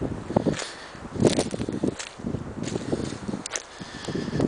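Footsteps crunching through dry leaf litter and pine needles on a woodland floor: several irregular rustling, crackling steps, with a few sharp snaps near the end.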